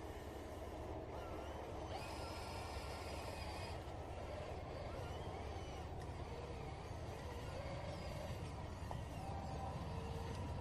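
Electric motor and gear whine of an RC crawler working in deep mud, with a brief higher whine about two to four seconds in.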